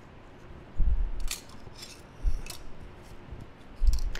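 Small sheet-metal rivet samples handled and set down on a wooden workbench: light metallic clicks with soft thumps, about a second in, again around two and a half seconds, and near the end.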